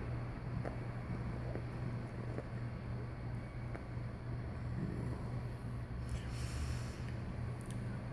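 A man drawing on a cigar and blowing out the smoke: soft puffing and breathing, with a hissing exhale about six seconds in, over a steady low room hum.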